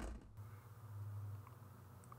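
Near silence: a faint steady low hum of room tone, with two very faint brief ticks.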